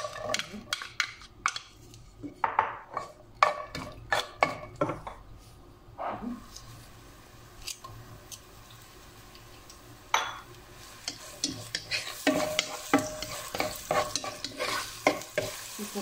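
Diced onion in hot oil in a nonstick pot, stirred with a wooden spatula: a run of knocks and scrapes against the pot in the first few seconds. A frying sizzle grows louder over the last few seconds as the onion starts to cook.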